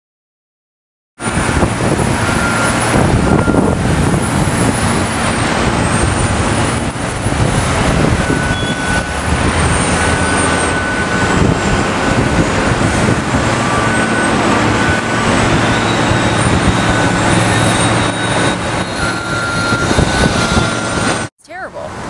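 Construction site noise: heavy machinery engines running steadily under a dense din. It starts about a second in and cuts off suddenly near the end.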